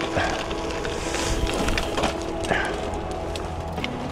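Wind buffeting the microphone while a road bike rolls along a towpath, with a few light clicks and rattles from the path and the bike. Faint steady tones run underneath.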